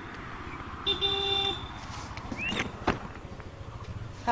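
A vehicle horn gives one short toot about a second in, a steady pitched tone lasting about half a second, over a steady low traffic rumble.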